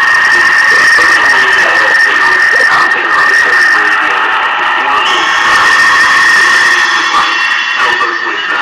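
Noise-music collage: a loud, steady high-pitched tone held throughout over garbled, unintelligible voice fragments, with a harsher, brighter layer joining about five seconds in.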